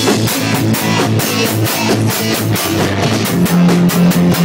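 Live rock band playing: strummed guitar and bass over a drum kit keeping a steady beat, loud and full.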